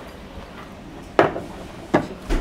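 A ceramic plate set down on a wooden table with a sharp knock a little over a second in, then a second click near the end as wooden chopsticks meet the plate.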